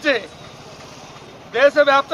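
A man speaking Telugu. One phrase ends right at the start, then there is a pause of over a second, and he begins speaking again about a second and a half in.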